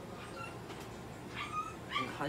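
Three brief high-pitched animal calls: one about half a second in, then two close together near the end, the last rising.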